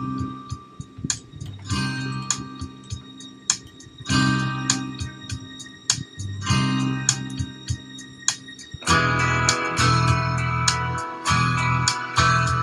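Instrumental intro to a ballad on guitar: a chord struck about every two and a half seconds and left to ring. It fills out with a steady bass and becomes louder about nine seconds in.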